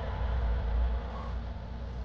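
A low, steady rumbling drone from the soundtrack, a little louder in the first second and then easing off.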